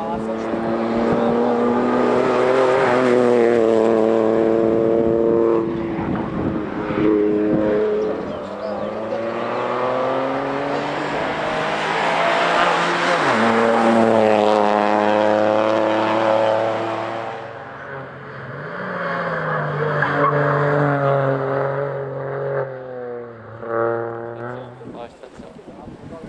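Suzuki Swift Sport Hybrid rally cars' 1.4-litre turbocharged four-cylinder engines running hard on a tarmac stage. The engine note holds at high revs, rises and falls with the throttle, and drops sharply at gear changes through the hairpin.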